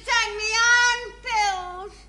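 A high-pitched voice holding one long note, then a second shorter note that slides down and stops near the end.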